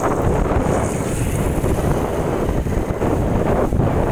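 Loud, steady wind buffeting the microphone of a camera riding forward on a moving motorbike.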